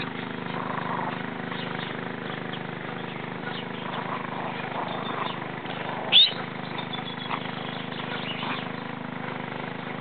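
A steady low hum with faint bird chirps, and one short, sharp, high-pitched yelp from a small dog about six seconds in.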